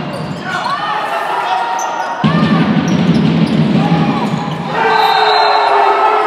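Volleyball rally in a sports hall: the ball struck with sharp smacks while players call out, then louder sustained shouting from about five seconds in as the point is played out.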